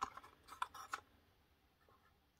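Faint clicks and rubbing of a small laser-cut plywood box being handled and turned over in the hands, a few light knocks in the first second, then near silence.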